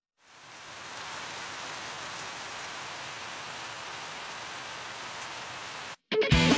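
A steady, even hiss of noise like static or rain. It fades in over about a second, holds level, then cuts off suddenly just before the music starts.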